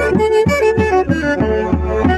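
Andean brass band music: saxophones and clarinets playing a Santiago dance tune over bass-drum beats, about four a second.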